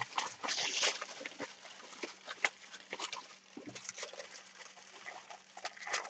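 Thin kitchen aluminium foil being scrunched and pressed between the hands, an irregular run of crinkling crackles as it is compacted into a tight lump.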